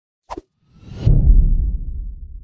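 Logo-intro sound effect: a short sharp click, then a swoosh that lands about a second in on a loud, deep low hit, which slowly fades away.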